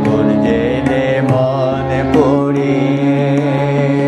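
Music of a Bengali devotional song: a steady drone holds underneath while a wavering melody line with vibrato moves above it, with light tabla strokes.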